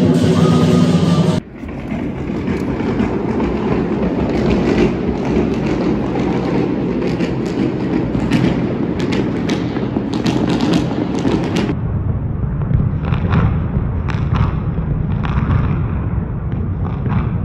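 Fireworks going off across the city at night: a dense wash of crackling and popping with dull booms, thinning in the upper crackle about two-thirds of the way through. Background music plays briefly at the start and cuts off about a second and a half in.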